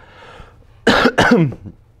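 A man coughs, two harsh bursts about a third of a second apart, roughly a second in, the second trailing off into his voice.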